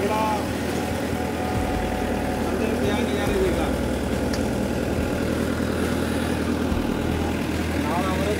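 A ferry boat's engine running steadily, a low, even drone.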